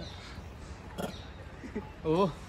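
A short, faint animal grunt near the end, over a low steady background hum, with a single click about a second in.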